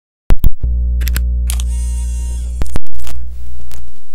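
Turntable start-up sound effects: a few sharp switch clicks, then a steady low electrical hum with a brief hiss above it. A loud click comes near the three-quarter mark, after which the hum returns and begins to fade.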